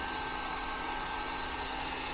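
Heat gun running steadily: an even rushing hiss of its fan and hot air, with a faint low hum underneath.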